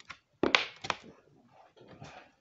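A few sharp knocks: a loud one about half a second in with a short ringing tail, another just before a second in, then fainter scraping noise.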